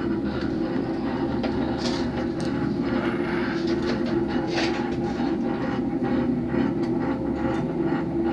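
Cable car cabin running along its ropeway cable: a steady mechanical hum with a constant light rattle and clicking.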